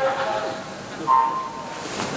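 Backstroke race start: a steady tone dies away in the first half second, then about a second in a short, loud electronic start beep sounds. Near the end the swimmers push off the wall with a splashing rush of water.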